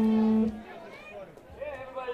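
A steady held musical note that cuts off abruptly about half a second in, followed by quieter talk and chatter in the bar.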